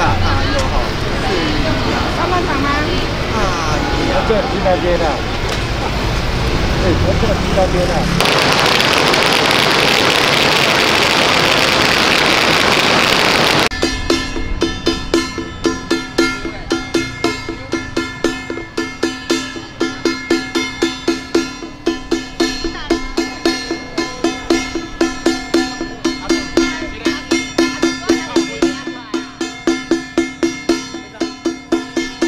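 Voices talking for about eight seconds, then a loud, even rushing noise for about five seconds. From about fourteen seconds in, a small hand drum and a handheld brass gong are struck in a steady beat, about two to three strikes a second, with the gong ringing on between strikes.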